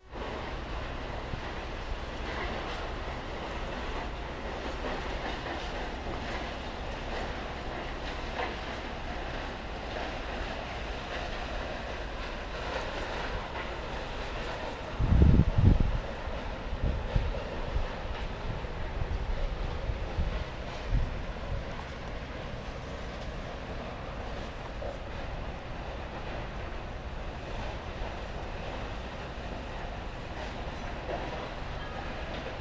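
Steady outdoor background noise, with low buffeting gusts of wind on the microphone about halfway through, the loudest near the middle.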